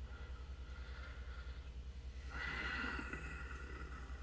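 A quiet pause filled by a low, steady hum, with a brief soft rush of noise a little past halfway through.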